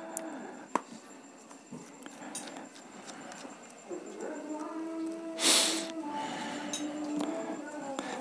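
Small screwdriver prying at the plastic clips of an Infinix Hot 9 Play's rear midframe: a few light clicks and one short rasping scrape about five and a half seconds in. A faint low hum runs underneath.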